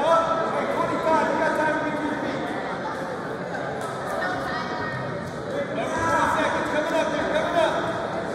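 Indistinct, overlapping voices of spectators and coaches calling out and chattering in a gymnasium, with no single clear speaker.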